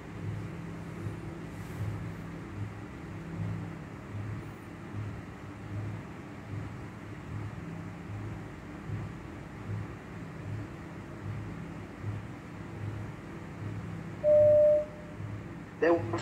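Low background hum that pulses about twice a second, with a single short, steady beep about a second and a half before the end.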